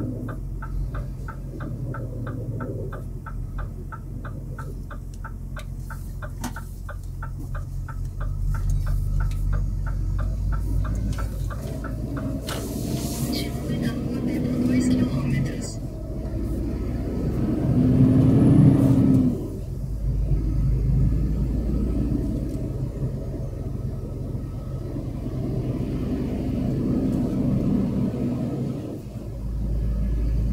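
Heavy truck's diesel engine running at low speed, heard from inside the cab, with the turn-signal relay clicking evenly at about two to three clicks a second for the first twelve seconds while the truck turns. A louder swell comes about eighteen seconds in.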